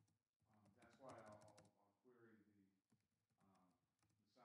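Very faint keyboard typing, quick runs of key clicks, under faint, indistinct speech.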